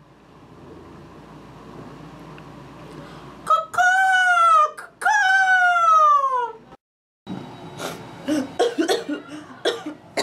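A person yelling: two loud, long cries that fall in pitch, starting about three and a half seconds in, followed near the end by a run of short broken vocal sounds.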